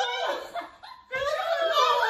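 Women laughing, mixed with a little speech, with a short break about a second in.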